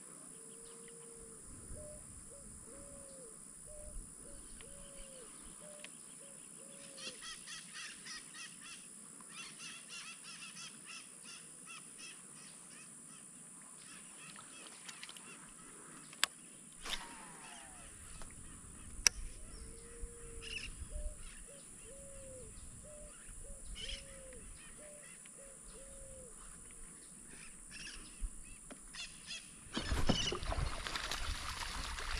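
Faint bird calls in a low repeated phrase: one longer note followed by a run of about six short ones. The phrase comes near the start and again about twenty seconds later. Faint fast chirping comes between them, and two sharp clicks about three seconds apart are the loudest sounds.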